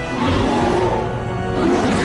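A cartoon dinosaur roar sound effect for a Spinosaurus, over dramatic background music.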